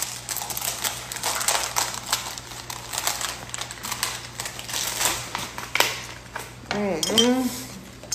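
Crisp rice cake crunching as it is bitten and chewed, a run of irregular crackles, with plastic packaging crinkling. About seven seconds in, a short vocal sound.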